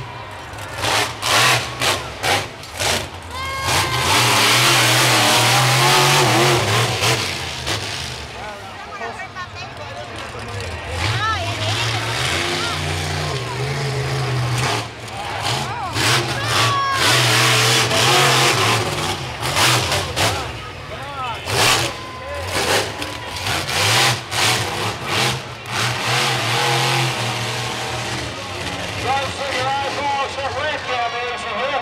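Gunslinger monster truck's supercharged V8 revving up and down through a freestyle run, with two long full-throttle surges, one about four seconds in and another around sixteen seconds. Crowd voices and yelling are heard over it.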